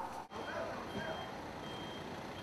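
A vehicle's reversing alarm beeping faintly in a steady rhythm, about one high beep every 0.7 seconds, over low street noise.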